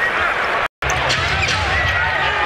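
Basketball arena ambience: steady crowd noise with faint voices and court sounds, broken by a split-second dropout at an edit just under a second in, after which a steady low rumble comes in.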